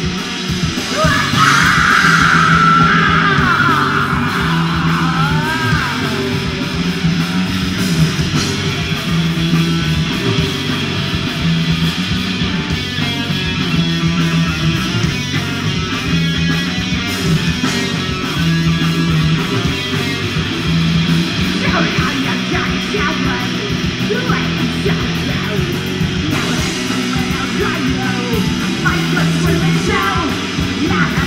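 Live punk rock band playing: distorted electric guitars, bass guitar and drums with a steady beat. A high, bending note stands out above the band for the first few seconds.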